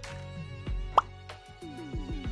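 Light background music with plucked notes, cut through about a second in by a short rising "plop" sound effect as the next quiz question pops onto the screen.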